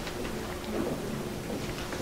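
Room noise with a steady faint hum and a few soft clicks and rustles of pen and paper as a document is signed at a table.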